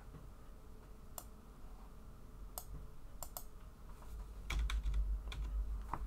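A few scattered, sharp clicks of a computer keyboard and mouse as code is edited, with a low rumble in the last second and a half.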